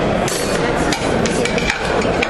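Indistinct babble of a crowd milling about, with a few sharp knocks and clinks through it.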